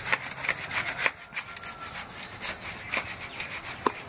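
A hand scraping and rubbing sand and grit across a concrete floor in short, irregular strokes.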